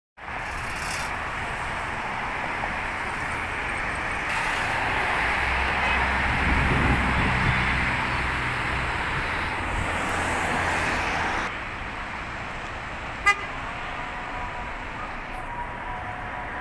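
Road traffic: a steady wash of car and road noise, with a heavier vehicle rumbling past around the middle. The noise drops off after about eleven and a half seconds, and a single short car-horn toot comes about thirteen seconds in.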